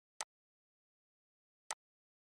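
Two short, sharp computer mouse clicks about a second and a half apart, against dead silence.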